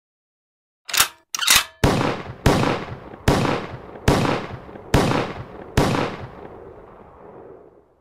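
Impact sound effects for an animated logo intro: two short cracks about a second in, then six heavy hits roughly every 0.8 s, each ringing out and fading. The last hit dies away near the end.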